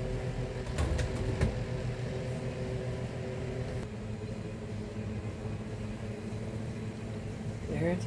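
Kitchen range-hood fan running with a steady hum, some of its tones dropping away about four seconds in. A glass pot lid clinks a few times as it is set onto a stainless steel pot about a second in.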